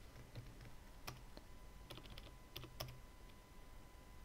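Faint typing on a computer keyboard: a handful of separate keystrokes, bunched together between about two and three seconds in.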